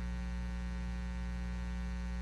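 Steady electrical mains hum, a low even buzz with a ladder of overtones and nothing else over it.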